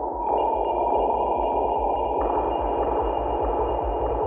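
Intro of a psytrance track: a muffled synth noise wash with a couple of steady high synth tones over a fast pulsing bass. A little past halfway a filter opens and brighter noise comes in.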